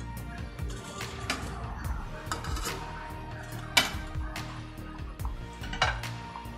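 A spatula clinking and knocking against a pan as tofu pieces are set into the sauce, several light knocks with two sharper clinks, one about four seconds in and one near the end, over background music.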